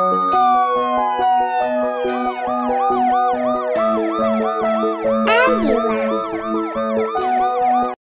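Cartoon ambulance siren: one long falling wail in the first two seconds, then a fast yelp that rises and falls about three times a second, over background music. About five seconds in, a short sweeping sound effect with a hiss cuts in.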